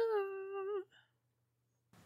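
A woman's drawn-out 'yeah', rising in pitch and then held, ending a little under a second in.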